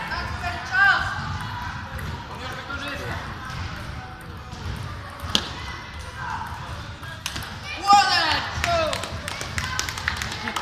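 Table tennis rally: a sharp click of the ball off a bat about five seconds in, then a quick run of ball-on-bat and ball-on-table clicks in the second half.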